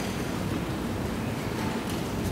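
Steady hiss of background noise with no distinct event: room tone and line noise of a courtroom microphone feed in a pause between speech.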